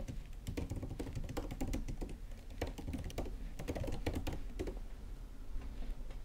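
Typing on a computer keyboard: runs of quick key clicks with short pauses between them, thinning out near the end.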